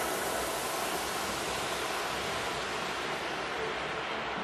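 Steady, even rushing noise of a Boeing 787 airliner's jet engines and airflow as it comes in to land, with no distinct tone or bang.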